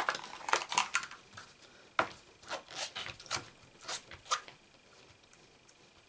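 Craft supplies being handled on a desk: a scatter of light clicks, taps and paper rustles from plastic stamping tools and card. The clicks thin out over the last second or so.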